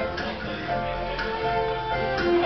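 Live country band playing an instrumental break between verses: sustained melody notes over a beat marked by a percussive hit about once a second.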